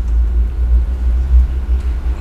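A loud, steady, deep rumble with nothing else standing out above it.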